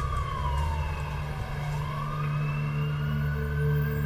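A siren wailing, its pitch falling slowly and then rising again, over a steady low drone.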